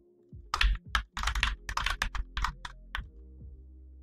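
Typing on a computer keyboard: a quick run of keystrokes lasting a couple of seconds, then it stops.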